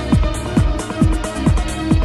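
Electronic dance music: a steady kick drum, each beat dropping in pitch, about two beats a second, with hi-hats and held synth tones over it.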